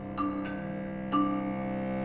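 Live orchestral music from a contemporary opera score: held string notes, with new notes entering sharply three times, about a fifth of a second in, near half a second, and just after one second.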